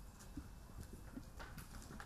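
Faint, scattered taps and clicks of people handling things at a lectern, picked up by its microphone over a low hum.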